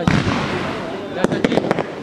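Aerial fireworks: a loud bang with a rumble after it right at the start, then a quick run of about five sharp cracks a little over a second in as several shells burst.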